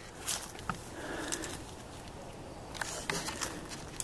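Dry grass and brush rustling and crackling with a few scattered snaps, as someone moves through it.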